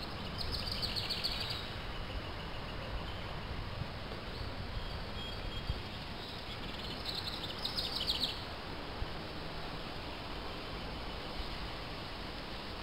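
Outdoor background noise with a songbird singing two short, rapid high trills, one near the start and one about seven seconds in.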